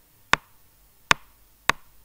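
Three sharp, short taps about two-thirds of a second apart: a stylus striking a tablet screen while writing.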